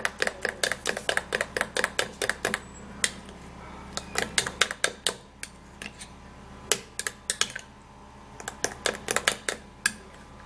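Metal spoon clinking against a small glass bowl while stirring a thick potato paste: quick runs of light clicks, about five a second at first, thinning out in the middle and picking up again near the end.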